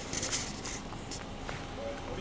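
Steady low outdoor background noise with a few faint short scuffs and rustles in the first second and another at about one second in.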